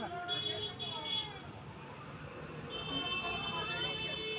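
Voices of people talking in the background, no one close to the microphone. A steady high-pitched tone starts up about three seconds in and holds.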